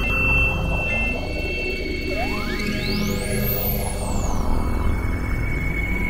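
Experimental electronic synthesizer music from a microKorg XL played by a Max/MSP patch: layered low drones under a steady high tone that steps down in pitch about a second in. From about two seconds in, a single whistling sweep rises steeply to a very high pitch, then glides back down.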